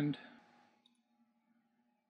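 A single faint computer mouse click, which opens a right-click menu to paste a command, with near silence around it after the end of a spoken word.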